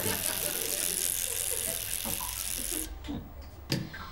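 Electric toothbrush buzzing and rattling against teeth, stopping abruptly about three-quarters of the way through, followed by a single sharp knock.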